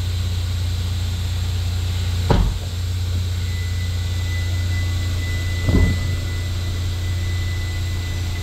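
A steady low hum throughout, with two brief dull thumps about two seconds and about six seconds in.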